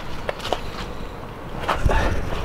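Footsteps and handheld camera handling noise over a low rumble, with a few light clicks and a low thump near the end.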